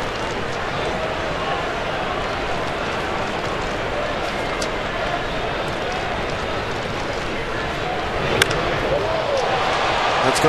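Steady ballpark crowd murmur, then, about eight seconds in, a single sharp crack of a wooden baseball bat hitting a pitched ball for a long foul, with the crowd getting louder after it.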